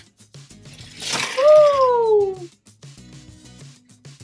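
A brief plastic clatter about a second in as the toy factory's lever is pushed down and the die-cast toy locomotive is released down the plastic ramp. It is followed at once by a loud falling "ooh" exclamation. Soft background music runs underneath.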